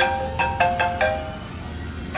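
Smartphone ringtone: an incoming call, heard as a quick melody of short, bell-like notes that plays for about a second, pauses, then begins again at the end.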